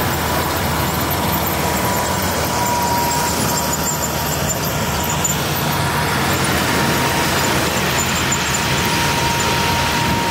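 Farm tractor running steadily as it tows a Barber Surf Rake beach cleaner across the sand, with a thin, steady high whine above the engine noise.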